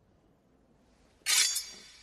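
A sudden bright crash near the end: two quick strikes close together, followed by a ringing tail that fades over about a second.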